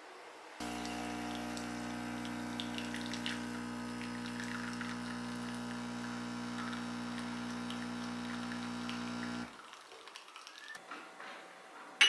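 An illy iperEspresso capsule machine's pump buzzes steadily for about nine seconds while brewing a shot into a glass, with espresso trickling over it, and the buzz cuts off suddenly. A glass clinks sharply at the very end.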